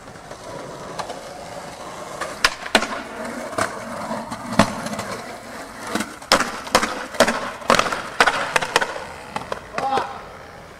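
Skateboard wheels rolling on concrete with repeated sharp clacks of the board and trucks hitting and riding a concrete ledge, the hits coming thickest between about six and nine seconds in.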